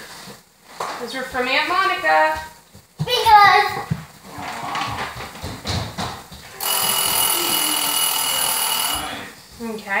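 Voices talk in the first half. Then an electronic kitchen timer sounds one steady, unbroken tone for about two and a half seconds and cuts off suddenly, signalling that the food in the oven is done.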